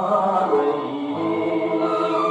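A vintage black-and-white-era Tamil film song playing, with a male voice singing long held notes over accompaniment, played back through a television speaker.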